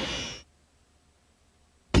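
Trailer soundtrack fading out about half a second in, leaving near silence: the blank gap between promos on a VHS tape. Just before the end the next promo's music cuts in suddenly and loudly.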